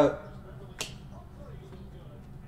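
A single sharp click about a second in from a stack of Panini NBA Hoops trading cards being flicked through by hand, card sliding off card, with faint handling noise around it.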